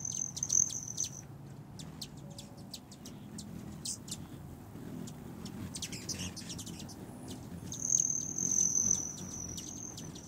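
Hummingbirds at a feeder: sharp chip calls all through, with a high, steady buzzing trill at the start and again near the end, and a low hum underneath.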